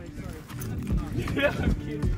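Footsteps of several people walking on a hard floor, steps about half a second apart, under low background chatter.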